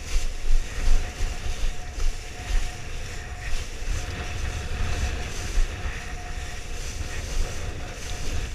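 Wind buffeting an action camera's microphone in gusts while a kiteboard planes over choppy sea, with the hiss of spray from the board and a faint steady tone underneath.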